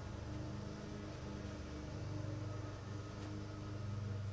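Room tone: a steady low electrical hum with a few faint steady tones, growing slightly louder about halfway through.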